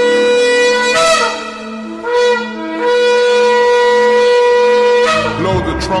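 Ram's-horn shofar blasts: a long held note that bends upward and breaks off about a second in, a short blast at about two seconds, then a long steady blast that stops about five seconds in.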